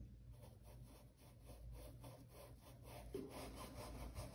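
Near silence, with a faint, repeated rubbing of a paintbrush working white paint into cloth.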